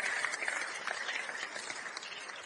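Congregation applauding in response to the preacher, the clapping fading away.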